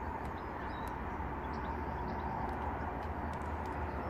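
Steady low background hum and hiss, with a few faint ticks and no clear single event.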